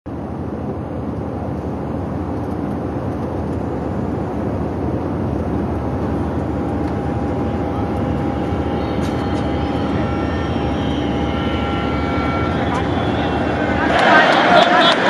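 Jet airliner cabin noise in flight: a steady drone of engines and airflow that grows slowly louder, with a steady mid-pitched tone and a few faint higher tones joining in the second half.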